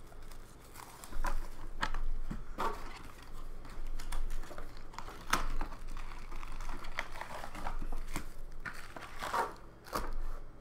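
Trading card packaging being crinkled and torn by hand: irregular rustles with short snaps, as packs and wrappers are handled and opened.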